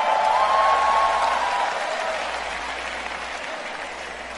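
A large audience applauding, loudest about a second in and then slowly dying away.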